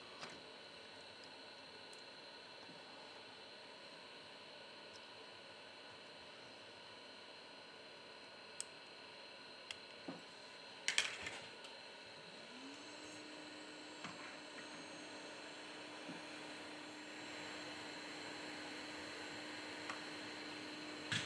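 Faint, scattered clicks and taps of a plastic pry tool against a smartphone's motherboard and frame as the board is lifted out, with a small cluster of clicks just past the middle. A steady low hum starts about two-thirds of the way through, over quiet room tone.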